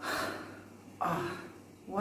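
A man's breathy gasp, then a second, partly voiced gasp about a second later.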